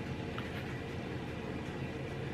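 Steady low hum and hiss of kitchen room noise from running appliances, with no distinct events.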